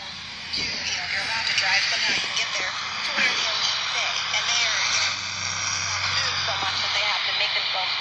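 Shortwave radio loudspeaker playing a talk broadcast on 12160 kHz in the 25-metre band, received through a Degen 31MS active loop antenna: a man's voice, faint and hard to make out under a steady hiss of static. A thin, steady whistle joins in about two seconds in.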